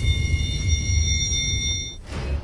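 Trailer soundtrack: a deep rumbling bass drone under a few high, steady ringing tones, and the high tones stop at the end.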